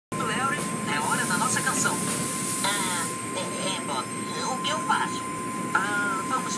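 Automatic car wash running: a steady wash of water spray and machinery noise as cloth curtains sweep over a car, with a higher hiss of spray for about two seconds near the start. Voices talk over it throughout.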